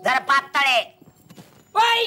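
A stage actor's voice rapidly repeating the same short syllable over and over in a rhythmic patter. The patter breaks off for under a second partway through, then starts again.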